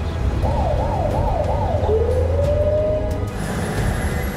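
An emergency-vehicle siren warbling quickly, about three rises and falls a second, then sliding up into one slow wail, over a steady low rumble.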